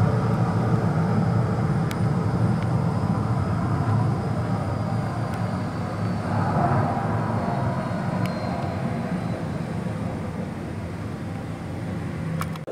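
Jet aircraft noise on an airport ramp: a steady low rumble, with a faint high whine that slowly falls in pitch through the middle.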